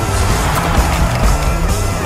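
Loud theme music of a TV show ident, with a steady bass beat and a rushing, noisy swoosh effect layered over it.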